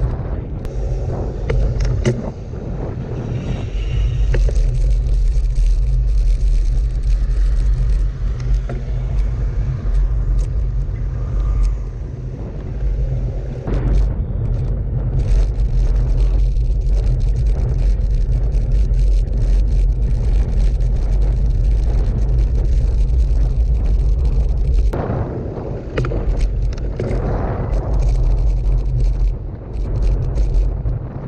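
Wind buffeting and a heavy low rumble picked up by a handlebar-mounted GoPro Hero 6 as a gravel bike rolls over gravel and then cobblestones, with many short rattling clicks from the road vibration. The sound changes abruptly about three-quarters of the way through.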